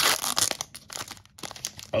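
Foil wrapper of a 2022 Panini Capstone baseball card pack being torn open and crinkled by hand: a burst of tearing at the start, then scattered crackles as the foil is peeled back.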